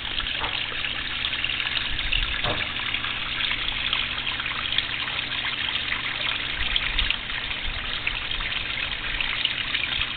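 Steady trickle and splash of water falling over a small rock waterfall into a pond, the return flow from a homemade pond bio filter.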